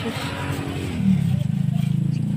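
A motor vehicle engine running, growing louder about a second in.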